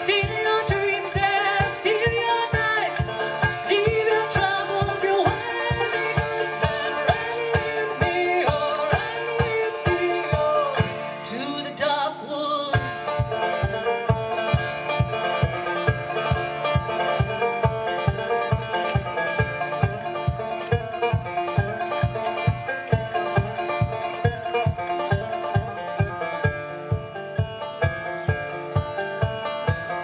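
Banjo played solo in an instrumental break, fast picked notes over a steady low thumping beat. The beat drops out for about a second near the middle and then comes back.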